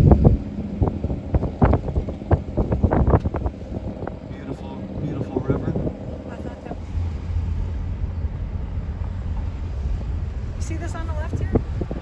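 Wind rumbling on the microphone, stronger in the second half, with faint voices talking on and off.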